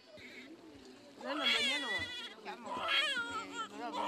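High-pitched shouts and calls from children's voices, rising and falling in pitch and starting about a second in.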